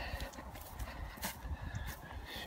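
Footsteps walking along a grass path, with low rumble and handling noise on a handheld camera's microphone and a sharp click about a second in.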